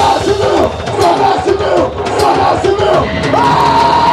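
Live punk band with a run of rhythmic shouted voices, about two a second, over the band and crowd noise. A long held note rises in a little past three seconds and carries on.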